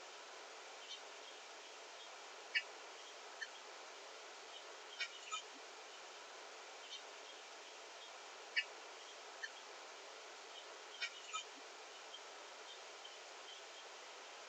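Metal utensils clinking lightly against bowls and dishes, about eight short clinks, several in quick pairs, over a steady faint hiss.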